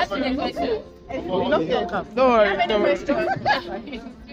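A group of people talking and exclaiming over one another, with one loud voice rising and falling in pitch about halfway through.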